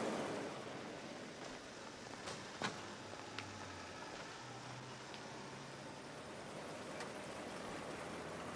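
Faint, steady outdoor background noise with a few light clicks. A low hum rises briefly near the middle.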